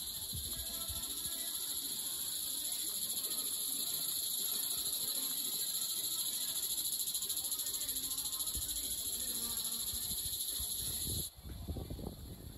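Steady, high-pitched chirring of insects, which cuts off suddenly near the end.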